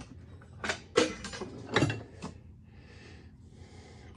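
Old steel hand tools clanking against each other as they are rummaged through in a cardboard box, four or five sharp clanks in the first two and a half seconds, then quieter.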